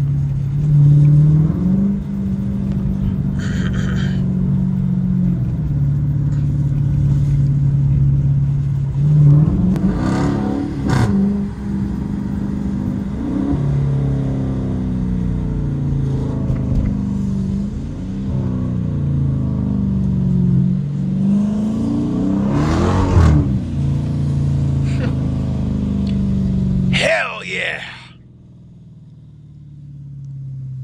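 Dodge Challenger R/T's 5.7 Hemi V8 heard from inside the cabin while driving, its note stepping and swinging up and down with the throttle. There are a few knocks and rattles over a bumpy road, and the engine sound drops away sharply about 27 seconds in as the car slows.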